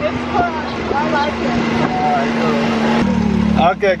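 Dune buggy (side-by-side UTV) engine running steadily while riding, with faint voices over it; about three seconds in the engine note drops lower in pitch.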